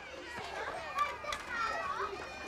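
Background chatter of several young children talking and playing at once, no single voice standing out.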